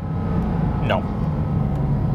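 Porsche 718 Cayman GT4 RS's naturally aspirated 4.0-litre flat-six running at a steady low drone while the car is driven, with road noise underneath.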